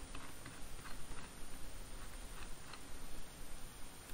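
Faint, irregular clicks over a steady low hiss, made while the lesson pages are moved through.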